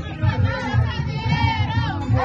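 Forró music with a steady bass beat, with a group of people shouting and singing along over it.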